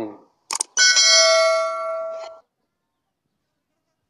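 A short click, then a bright bell-like notification chime of several steady tones ringing for about a second and a half before it stops: a subscribe/notification-bell sound effect laid over a tap on the bell icon.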